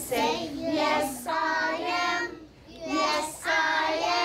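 A group of young children singing a simple repeating song together, in two phrases with a short break about two and a half seconds in.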